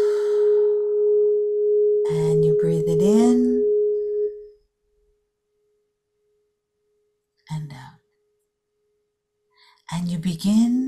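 Crystal singing bowl played with a suede-covered mallet, giving one steady, pure tone that cuts off sharply about four seconds in and leaves only a faint trace. A voice briefly sounds over the tone partway through, and again shortly before the end.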